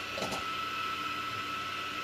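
Steady background room noise with a thin, constant high-pitched whine, and a brief faint sound about a quarter second in.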